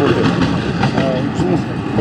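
Steady noise of road traffic from cars and trucks on a busy multi-lane city street, with a man's voice over it.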